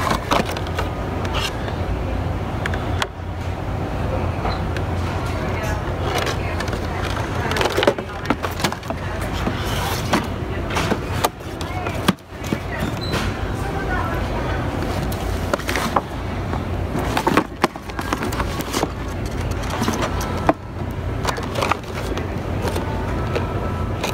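Plastic-windowed toy boxes being picked up and shifted by hand, with frequent short clicks and knocks and rubbing on the phone's microphone, over a steady low rumble and background voices.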